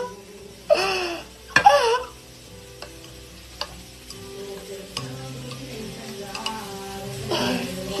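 Metal spoon stirring milky coffee in a glass mug, clinking against the glass a few times.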